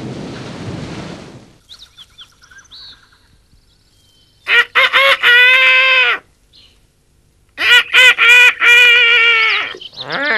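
A cartoon rooster crowing twice, loud and pitched, each crow a few quick notes ending in a long held note. Before it there is a short rushing noise and some faint high chirps.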